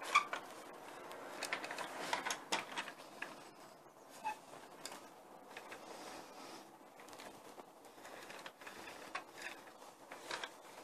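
Quiet handling noise from a Bruder plastic toy telehandler being moved by hand: scattered light clicks and rubs of its plastic parts, thickest in the first few seconds and again near the end.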